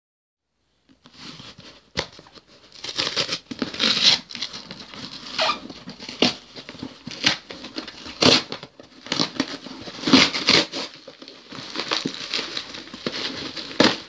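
A cardboard shipping box being opened by hand: the packing tape is picked at and ripped, and the cardboard tears and rustles in short repeated bursts. There is a sharp click about two seconds in.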